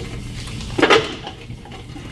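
Cybex leg curl machine working through a repetition, with one short metallic clank about a second in over a low steady hum.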